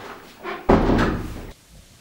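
A door shutting with a heavy thud about two-thirds of a second in. The sound cuts off suddenly under a second later.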